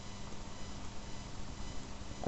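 Room tone: a steady background hiss with a faint low electrical hum, and no distinct sound.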